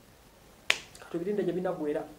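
A single sharp click a little under a second in, followed by a man speaking.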